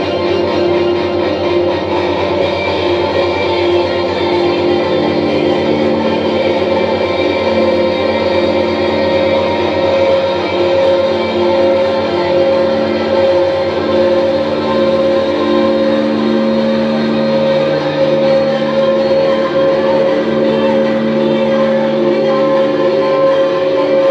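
Live electronic drone music: a dense, steady wash of several held tones over a noisy upper layer. About two-thirds of the way through, the lowest tones fade and the low-middle ones swell.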